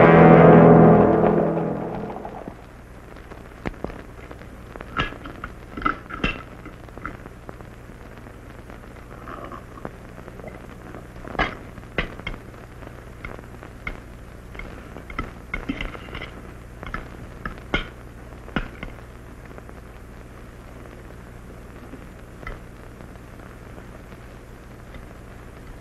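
Orchestral film score with brass fades out over the first two seconds. Then come scattered light clinks of forks and knives against china plates and cups during a meal, over a low steady hum.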